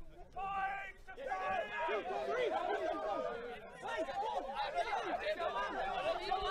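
A group of men's voices chattering and laughing at once, excited and overlapping.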